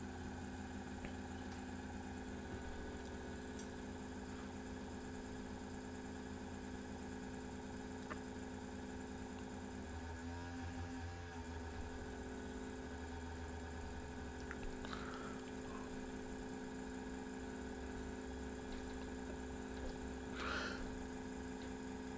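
Steady low electrical hum with faint background noise, with a few faint ticks along the way.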